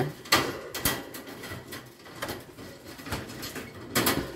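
Metal wire cage door rattling and clicking as a small metal clip is hooked through it to lock it shut, a few sharp clinks spread over several seconds.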